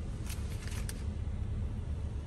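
Steady low rumble of a Jeep Wrangler JK idling, heard from inside the cab, with a few faint clicks.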